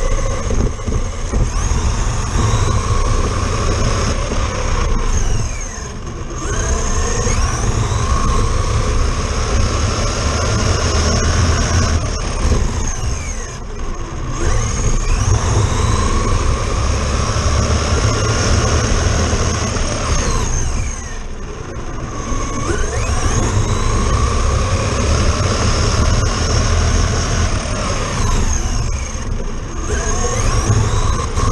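Traxxas Slash RC truck heard from a camera mounted on it: its electric motor and gears whine up and down in pitch as it speeds up and slows down again and again, over heavy rumble from the tyres on rough asphalt. The sound eases briefly about 6, 14 and 21 seconds in.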